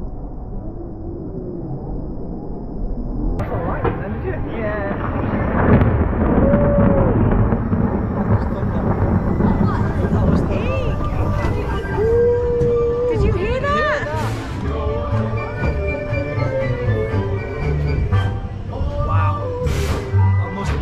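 Seven Dwarfs Mine Train roller coaster running along its track, with music and riders' voices over it. The sound turns suddenly louder and fuller a few seconds in.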